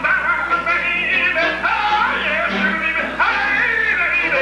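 A man scat singing into a microphone: wordless vocal runs with quick pitch slides up and down, with a live band behind him.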